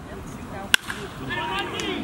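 Metal baseball bat hitting a pitched ball: one sharp, ringing ping about three quarters of a second in, followed by spectators' voices.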